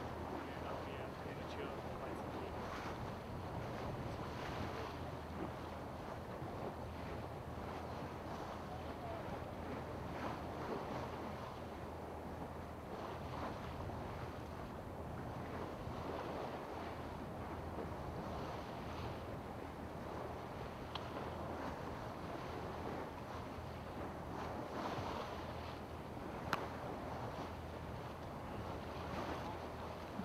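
A boat's engine running with a low, steady hum under wind and water noise, heard from on board. A single sharp click comes near the end.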